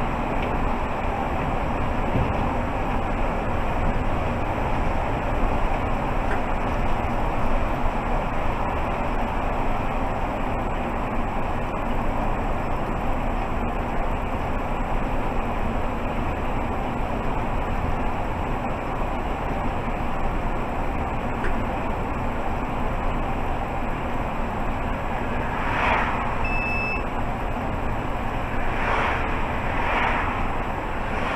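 Mercedes-Benz Citaro G articulated bus cruising at about 45 km/h, its steady engine and tyre noise heard from inside the driver's cab. Near the end, two oncoming cars pass with brief whooshes, and a short beep sounds between them.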